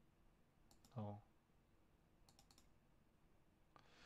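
Faint computer mouse clicks against near silence: a pair just before a short spoken "oh", then a quick run of about four about two and a half seconds in.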